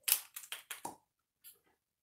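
A quick run of about five small clicks and taps in the first second, then one faint tap later: a plastic liquid eyeshadow tube and its cap being handled and opened.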